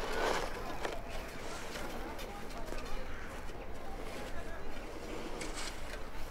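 Quiet outdoor ambience with faint background voices, and a brief soft rustle right at the start.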